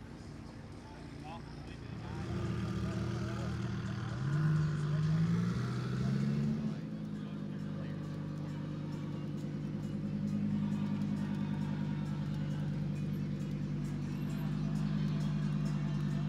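Supercar engines driving slowly past: a McLaren's twin-turbo V8 running, its revs rising and falling twice in quick succession a few seconds in, then a Lamborghini Huracán EVO's V10 running steadily at low revs as it pulls away.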